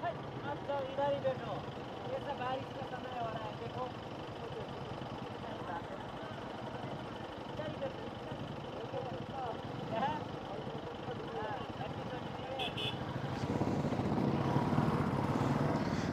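Faint, indistinct voices talking over the steady running of a motorcycle engine. The engine noise grows louder near the end.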